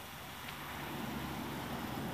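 A motor vehicle engine's low, steady rumble, growing louder about half a second in.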